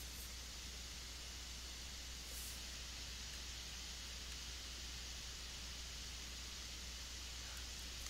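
Faint steady hiss with a low hum underneath: the recording's background room tone, with no distinct sounds.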